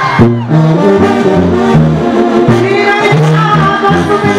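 Mexican banda (brass band) playing live: trumpets and trombones over a tuba bass line that steps from note to note, in an instrumental passage of a medley.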